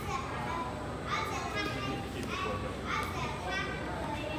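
Children's high-pitched voices calling out again and again over the chatter of an audience.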